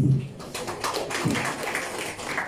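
Applause from a small gathering of people clapping, starting about half a second in and running on as a dense patter.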